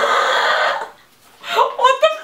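Women laughing: a breathy burst of laughter through most of the first second, a brief lull, then a voice starting again near the end.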